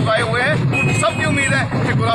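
Speech: a man talking into a reporter's microphone, with street background noise behind.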